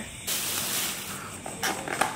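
Thin plastic bag rustling as hands pull it open around a takeaway food container. The rustle starts a moment in and fades out about a second and a half in.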